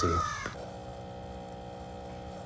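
Single-serve coffee maker humming steadily as it brews coffee into a stainless steel cup, starting about half a second in.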